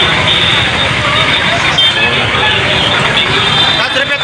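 Steady, loud noise of a crowded street market: many people talking at once, with road traffic mixed in.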